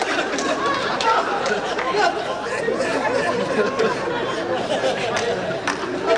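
Chatter of many overlapping voices, with no single clear speaker.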